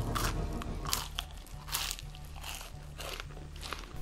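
Close-up crunching as someone bites and chews a crispy puffed-rice cereal bar: a run of short, sharp, irregular crunches, roughly two a second.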